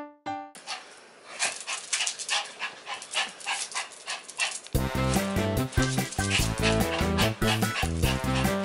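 A toy poodle moving about on a wooden floor, making a run of short, quick noises with no clear pitch. Just past halfway, background music with a heavy bass beat comes in and is the loudest sound from then on.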